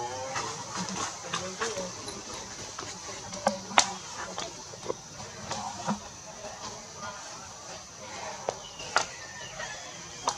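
Faint background voices murmuring over a steady high-pitched hum, with a few sharp clicks, the loudest a little before four seconds in and again near the end.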